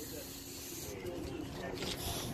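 A lull in the auction calling: faint, indistinct voices of people standing around over a low background hiss and a faint steady hum.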